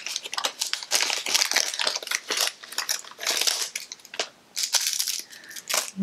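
Resealable jewelry packaging pouches crinkling and crackling as they are handled and opened, with a brief lull a little after four seconds in.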